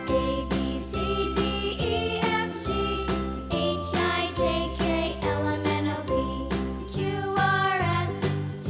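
Background music: a bright, tinkling children's tune with a steady beat of about two strokes a second.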